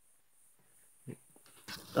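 A quiet pause with one faint, short low sound about a second in and a few faint ticks. Near the end a man starts speaking.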